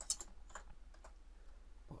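Computer keyboard keystrokes: a quick run of key clicks at the start, then a few single, spaced-out keypresses.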